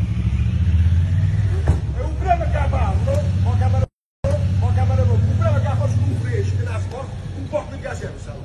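Motorcycle engines running in a low, steady rumble, with voices shouting over them. The sound cuts out briefly about four seconds in, and the engine rumble falls away near the end.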